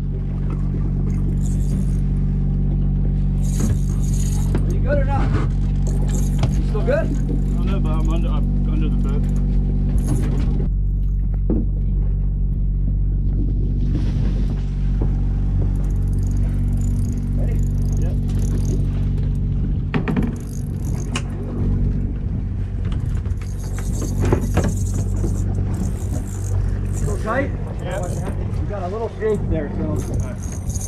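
Steady low hum of a sportfishing boat's diesel engines running, with indistinct voices calling out now and then.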